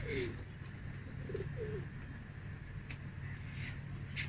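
Domestic pigeons cooing: a few short, low coos near the start and again about a second and a half in, over a steady low hum.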